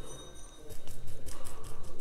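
A quick run of light taps and clicks, several a second, starting about a third of the way in, from a paintbrush and painting tools being handled on the desk.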